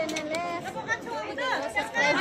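Group chatter: several voices talking over one another.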